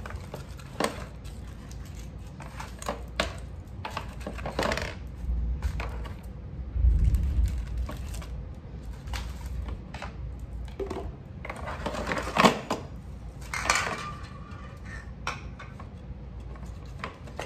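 Irregular clicks, clinks and rattles of small hard items being lifted out of the bottom bin of a plastic tackle box and set down on a tile floor, with a few short rustles of packaging. One sharper knock stands out past the middle.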